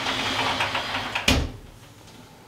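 A wooden-framed sliding wardrobe door running along its track as it is pushed open, ending in a knock as it reaches its stop about a second and a half in.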